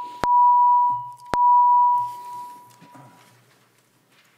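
A clear, bell-like single tone struck twice about a second apart, each strike starting with a sharp click and ringing about a second. The ring of a strike just before is still sounding at the start, and the last ring fades away over the next two seconds.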